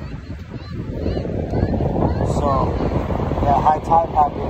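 Wind buffeting the microphone over surf washing on the beach, growing louder about a second in.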